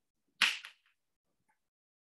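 A stick of chalk striking the blackboard, a short, sharp tap and scrape about half a second in, with a smaller one just after.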